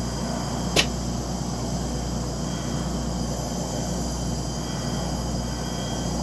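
Heavy truck's diesel engine idling with a steady low drone, a single sharp click or tap about a second in, and a faint steady chirring of insects over it.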